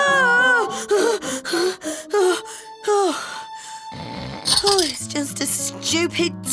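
A woman's wordless wailing cries: a long one at the start, then several short cries falling in pitch, over background music.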